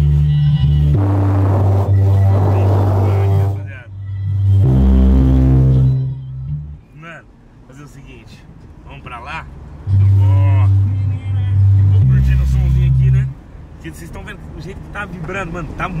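Car audio system in a small car's cabin playing bass-heavy music very loud, deep bass notes each held a second or two. The bass drops away about six seconds in, returns around ten seconds, and drops again after about thirteen. The system has just been tuned with its bass turned up much stronger.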